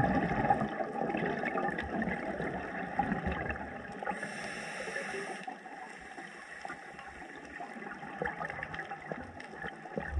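Scuba breathing heard through an underwater camera housing: exhaled bubbles gurgling for the first few seconds, then a short hiss of an inhale through the regulator about four seconds in, and quieter water noise after.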